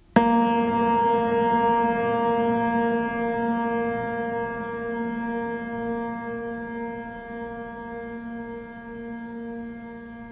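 Background music: a singing bowl struck once, its deep metallic ring sustaining and slowly fading, with a gentle wavering beat.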